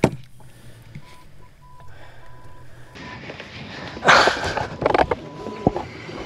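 A pure electronic beep, broken into a string of short dashes and then one longer beep near the end, in the manner of a censor bleep laid over words. About four seconds in there is a loud burst of noise, with a sharp click at the very start.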